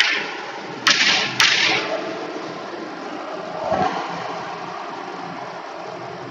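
Two short, sharp strokes of chalk on a blackboard about a second in, half a second apart, followed by a steady background hiss.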